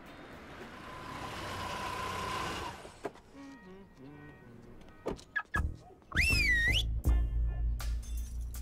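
A car drives past, its noise swelling over the first few seconds and then fading. A few clicks follow, and near the end a short warbling electronic tone sounds over loud bass-heavy music.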